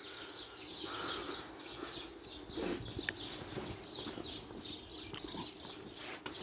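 Small birds chirping steadily from the street's hedges and gardens, with the walker's footsteps on the pavement.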